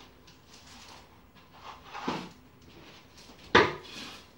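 Broom sweeping a laminate floor with soft brushing, and knocks from the broom and plastic dustpan against the floor: one about two seconds in and a loud, sharp clack near the end.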